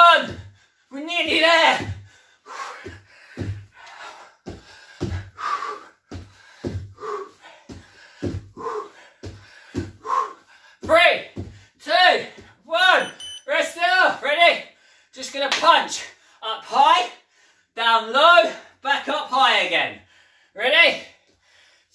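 A man's strained, wordless vocal breaths and grunts during hard exercise, growing more frequent and louder in the second half, over bare feet landing on a wooden floor in a steady rhythm of jumps.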